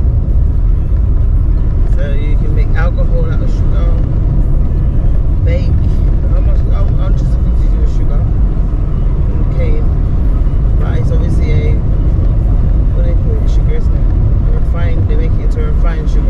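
Inside a moving car: a steady low rumble of tyres and engine on a country road, with faint, indistinct talk from the passengers.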